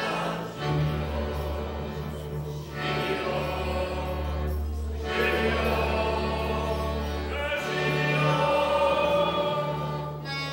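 A group of voices singing a Slovak folk song together in phrases of a few seconds each, over a folk band with a steady double bass underneath.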